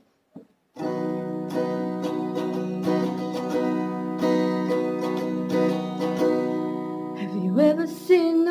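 Acoustic guitar strummed steadily, starting about a second in after a short silence and playing a song's introduction. A woman's voice comes in near the end.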